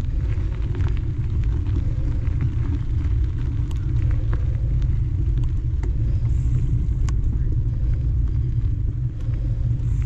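Steady low rumble of a mountain bike being ridden along a dirt singletrack, the tyre and wind noise of the ride at the camera, with scattered light clicks and rattles.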